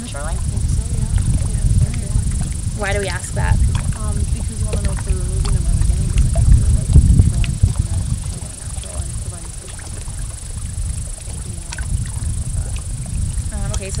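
Steady low rumble of wind on the microphone, with short bits of quiet talk near the start, about three seconds in and again around five seconds.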